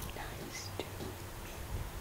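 Faint whispering over a low steady hum, with a few soft hisses and clicks.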